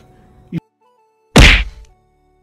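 A single loud thud, an edit-transition sound effect, hitting about one and a half seconds in and dying away within half a second. A faint click comes just before it.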